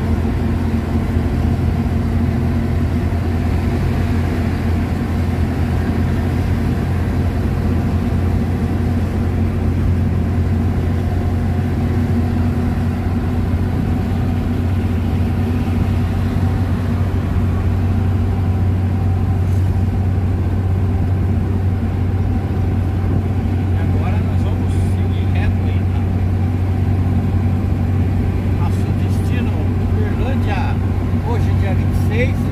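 Truck engine running steadily at cruising speed, heard from inside the cab, with a constant low hum and road noise.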